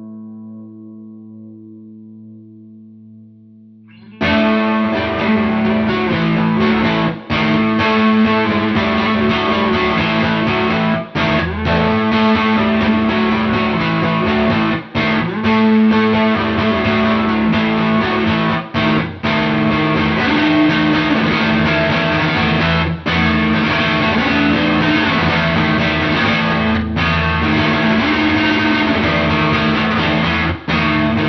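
Electric guitar through a distortion effect, playing an open A-string drone under a melody on the D string. A held note dies away over the first four seconds, then loud playing starts and runs on, broken by a few short gaps.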